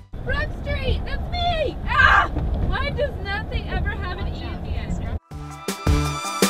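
Steady low road and engine rumble inside a moving car, with people's voices talking indistinctly over it. Music cuts back in about five seconds in.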